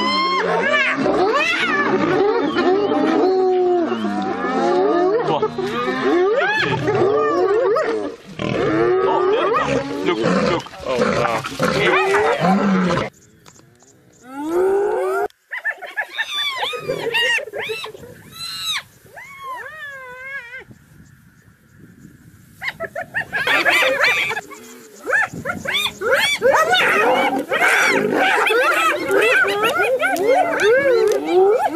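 Hyenas and a lion calling during a fight: many overlapping cries that rise and fall in pitch. The calling drops out briefly about halfway, then comes back quieter and picks up to full strength again for the last several seconds.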